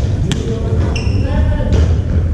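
Badminton rackets striking a shuttlecock: two sharp hits about a second and a half apart, over a steady low rumble and voices in a large hall.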